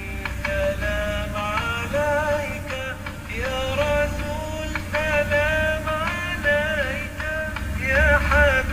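Background music: a voice singing a melody with wavering, sliding notes over a low steady bass and short percussive clicks.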